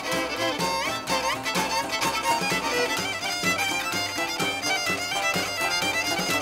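Acoustic string band playing an instrumental passage with a steady beat: a fiddle carries the melody in sliding, bending lines over upright bass, guitars and drums.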